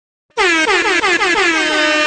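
Dancehall-style air horn sound effect in the music mix, coming in loud about a third of a second in after a brief silence and sounding in rapid repeated falling-pitch stabs, several a second.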